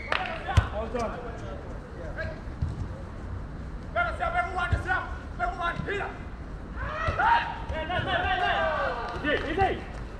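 Players shouting and calling to one another during a small-sided football game on artificial turf, in bursts about four seconds in and again from about seven seconds. A single sharp thud of the ball being kicked comes about half a second in.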